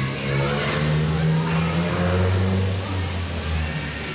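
A motor vehicle's engine running close by, a low drone that drops in pitch about halfway through and stops shortly before the end.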